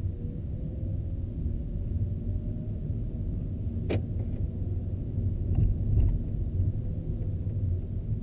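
Cabin sound of a 2013 Nissan Leaf electric car driving with the air conditioning off: quiet, with a low steady road rumble and a faint thin whine that rises slightly and then holds. A single sharp click sounds about four seconds in, with two fainter ticks shortly after.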